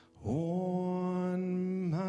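Slow meditative music: a single voice singing long held notes. After a brief pause, a note slides up into pitch about a quarter second in and is held steadily, dipping into the next note near the end.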